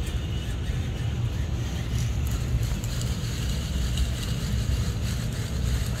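A fishing reel being cranked as braided line winds onto it off a spool pressed between two tennis balls for tension, under a steady low rumble.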